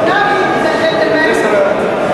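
People's voices talking indoors, with no clear words coming through.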